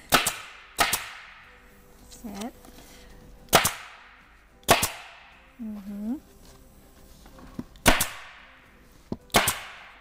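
Pneumatic upholstery staple gun firing six times at irregular intervals, each shot a sharp crack followed by a short hiss of exhaust air, as it staples batting down onto a board.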